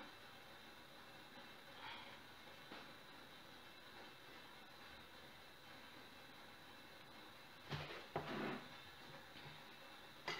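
Near silence: room tone, with one short, louder sound near the end.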